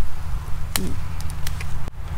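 Curly kale being picked by hand: one sharp snap of a leaf stem a little under a second in, then a few faint clicks, over a steady low rumble.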